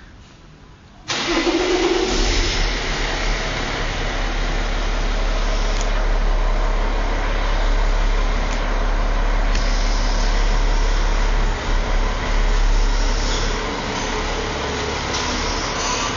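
A car engine starts abruptly about a second in and then keeps running steadily.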